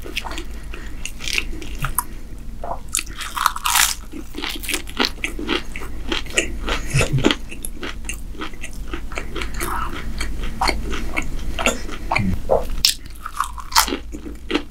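Close-miked biting and chewing of crisp stuffed pastry: a dense run of sharp, crackling crunches and mouth sounds that goes on throughout.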